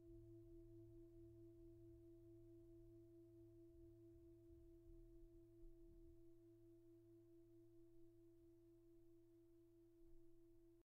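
A faint singing bowl tone held steady and slowly dying away, with fainter overtones above it and a low hum beneath.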